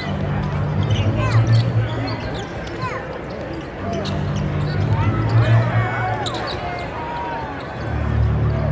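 A live basketball game heard from the stands: sneakers squeaking on the hardwood and the ball bouncing, over crowd chatter in a large arena. A deep low drone swells in at the start, again about four seconds in, and once more at the end.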